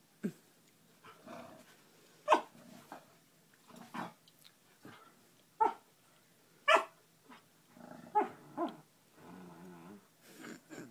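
Two dogs, a husky puppy and a black dog, play-fighting: about seven short, sharp barks and yips spaced a second or so apart, with growling near the end.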